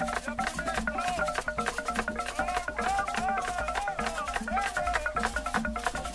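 Traditional Cameroonian percussion music: fast, dense drumming and wooden clicking strokes, with a wavering melodic line over the rhythm.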